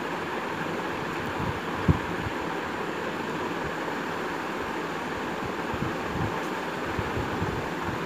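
Ginger-garlic paste and curry leaves sizzling steadily in hot oil in a stainless-steel pressure cooker while being sautéed, with a single clink of the steel spoon against the pot about two seconds in.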